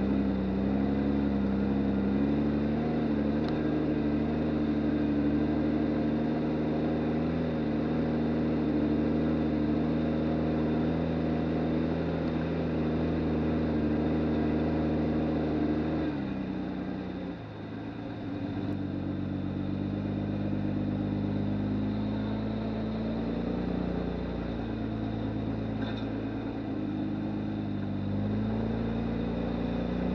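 1997 Lexus LX450's 4.5-litre straight-six engine running at a low crawl with a steady drone. About halfway through it dips briefly, then runs on with its pitch stepping up and down as the truck climbs a rutted dirt trail.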